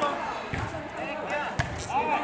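A volleyball being struck during a rally: two dull hits about a second apart, over the chatter of a crowd of onlookers.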